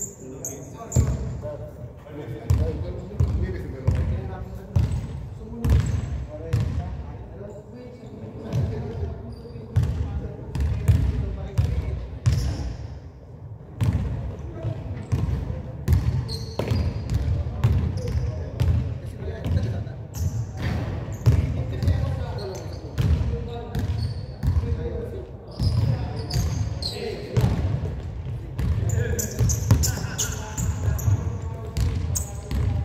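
Basketballs bouncing on a hardwood gym floor with players' footsteps, short high shoe squeaks and players' shouts, all echoing in a large gym.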